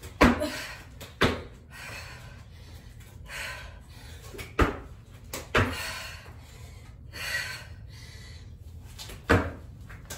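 Ninja jump tucks: knees and shoes thudding on an exercise mat over concrete, about six sharp landings spread unevenly, with hard breathing between them.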